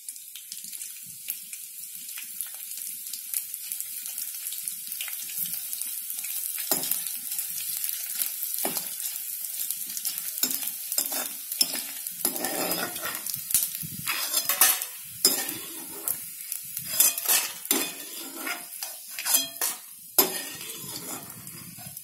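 Edible gum (gond) frying in hot ghee in a metal kadai, a steady sizzle as the pieces puff up. From about halfway on, a ladle stirs and scrapes against the pan in quick, irregular strokes.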